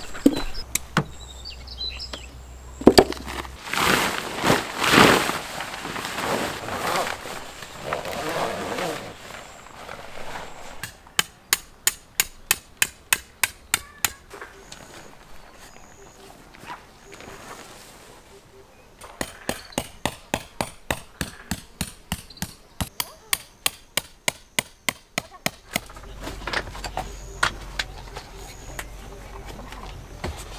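Two runs of sharp, quick knocks, evenly spaced at about four a second, each lasting a few seconds, after a stretch of irregular handling noise and knocks in the first ten seconds.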